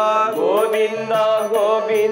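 Male voice singing a devotional verse in a chanted melody, gliding up early on and then holding a long note. A harmonium holds a drone under it, and a two-headed barrel hand drum taps lightly.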